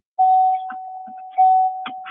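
An electronic chime: one steady mid-pitched tone that sounds just after the start and again about a second later, each time fading slowly.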